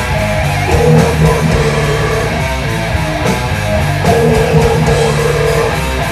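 Death metal band playing live: distorted electric guitars riffing over bass and drums, loud and unbroken.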